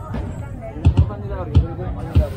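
People talking nearby, with a few dull low thumps under the voices, two of them standing out.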